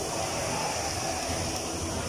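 Steady, even background noise of an indoor amusement-park hall while a spinning ride runs, with faint distant voices.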